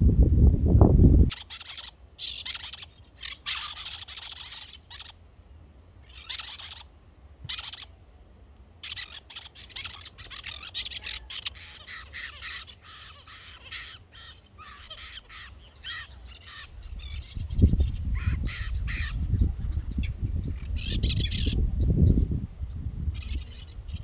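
Wild birds calling, many short high calls in quick bursts, some of them close together. Wind rumbles on the microphone from about 17 seconds in.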